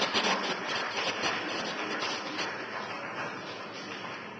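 Room noise of a large assembly chamber: an even haze with faint clicks and rustles near the start, slowly fading.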